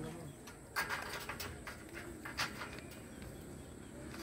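A few faint, sharp clicks and knocks spread over the first half, a metal ladder being handled and set against a pole, with low voices in the background.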